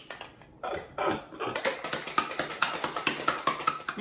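Ice rattling hard inside a stainless steel cocktail shaker as it is shaken. It settles into a fast, even run of sharp knocks, several a second, from about a second and a half in.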